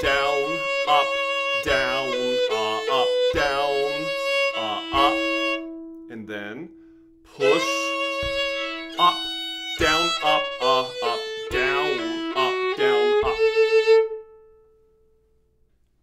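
Solo fiddle playing slow old-time phrases, with a second string droning steadily under the melody. It breaks off for about a second near the middle, then plays on and ends on a held note that fades out shortly before the end.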